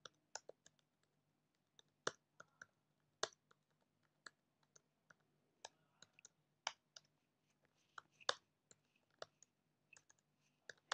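Computer keyboard being typed on: single, irregularly spaced keystroke clicks, some a fraction of a second apart and some more than a second apart, against a very quiet room.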